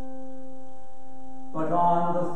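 A single steady musical note near middle C, with an even row of overtones, held for about two seconds. A man's voice comes in over it near the end.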